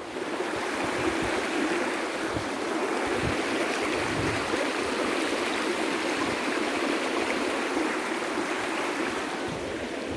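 A shallow, stony stream running, a steady rushing and burbling of water over rocks.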